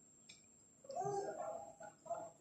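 A small child's wordless voice: one drawn-out, bending whiny sound about a second long, starting about a second in.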